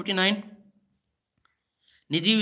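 A man's voice speaking Hindi, trailing off about half a second in, then near silence broken by two faint clicks near the end.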